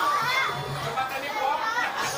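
High-pitched voices calling out in a crowd, their pitch sliding up and down, over a faint low hum.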